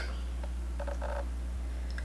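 Steady low electrical hum in a pause between speech, with a few faint short tones about a second in.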